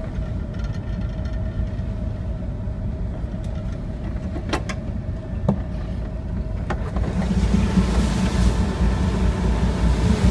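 Ship's engine running steadily on deck, a low rumble with a constant hum, with a few sharp knocks in the middle. From about seven seconds in, wind and sea noise grow louder over it.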